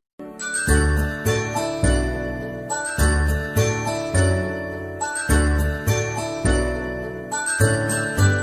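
Instrumental children's background music: chiming, bell-like melody notes over a steady bass, with a momentary break right at the start.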